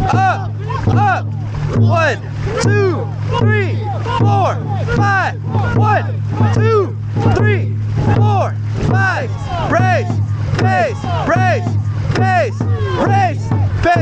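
Dragon boat crew shouting short rhythmic calls in time with the paddle strokes, about two a second, over a steady low hum.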